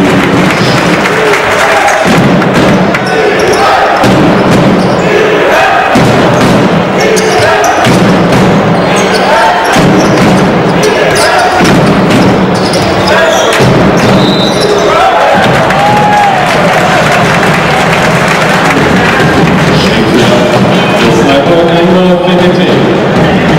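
Basketball game sound in a sports hall: a ball bouncing on the hardwood court under continuous crowd voices and music in the hall.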